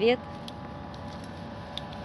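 A woman's voice ending a phrase at the very start, then steady faint outdoor background with a low continuous hum and a few faint ticks.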